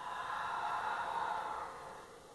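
A woman's long, audible exhale: a breathy rush that fades out after about a second and a half.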